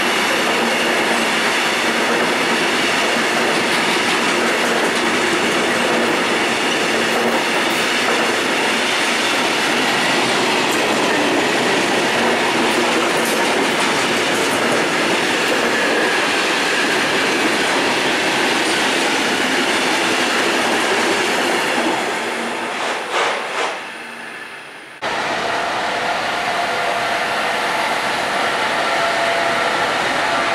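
Long freight train of loaded hopper wagons rolling past at speed, a loud steady rolling noise from wheels on rail that falls away with a few clicks as the last wagons go by, about 23 seconds in. After a sudden cut, a DR Class 132 diesel locomotive moving slowly, a steady engine sound with a held tone.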